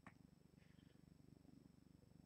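Near silence: room tone with a faint low rumble.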